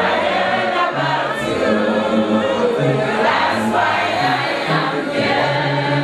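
A congregation singing together as a choir, a gospel hymn sung by many voices at once, with held low notes underneath.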